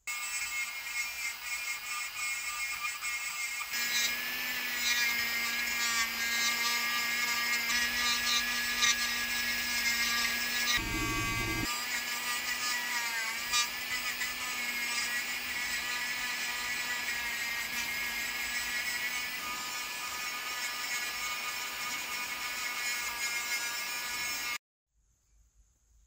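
High-speed electric micromotor rotary tool whining steadily as its rubber abrasive wheel grinds and polishes a small cast-metal bust. The pitch sags briefly about halfway through, and the sound cuts off abruptly near the end.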